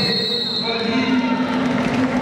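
Voices carrying through a wrestling hall, with a short, high steady tone near the start that fades within about half a second.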